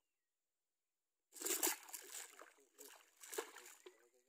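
Water splashing in bursts as a hooked snakehead thrashes at the water's edge while being landed by hand. It starts a little over a second in, is loudest at first, and has another strong splash near the end.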